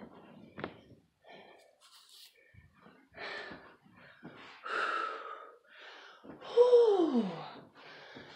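A woman breathing hard and gasping, out of breath just after holding a plank, with a loud voiced sigh about six and a half seconds in that falls in pitch.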